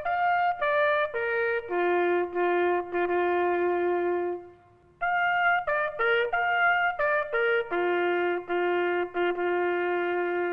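A lone bugle sounding a slow call in two phrases, using only the open notes of the horn and ending each phrase on a long held low note, with a short pause just before halfway.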